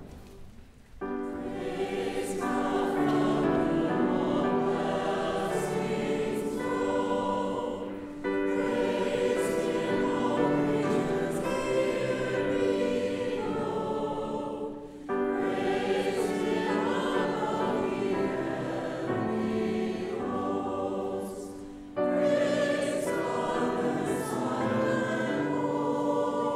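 A church choir singing a hymn in a sanctuary. The lines start abruptly about every seven seconds.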